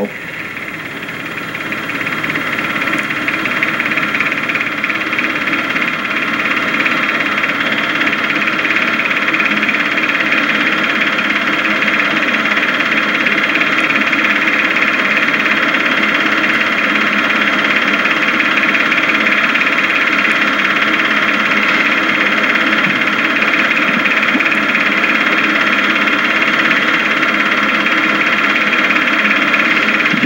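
Steady mechanical running noise with a constant hum and whine, fading in over the first couple of seconds.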